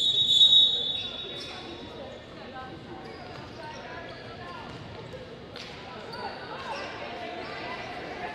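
Volleyball referee's whistle: one loud, steady blast of about a second that authorises the serve. It is followed by gym sounds from the rally: voices and the ball being struck.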